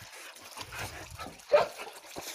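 A dog gives one short bark about one and a half seconds in, over the low scuffling of dogs crowding close.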